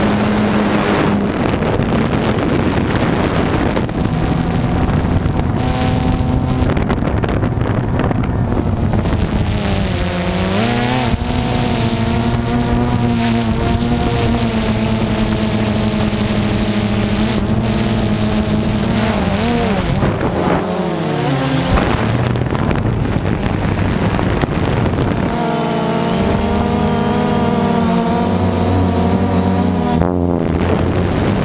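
DJI Phantom 2 quadcopter's electric motors and propellers buzzing, heard from the camera mounted on the drone, with wind on the microphone. The pitch steps up and down as motor speeds change, with a sharp dip and swoop about two-thirds through. The drone is flying erratically after a v3.10 firmware upgrade, with the pilot fighting it.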